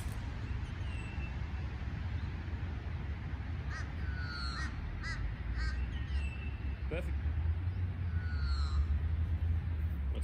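Birds calling on and off in short chirping, sliding notes over a steady low rumble, with a single sharp click about seven seconds in.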